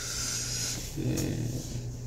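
A man's breathy hiss of breath for under a second, then a short rough throaty breath, over a steady low hum.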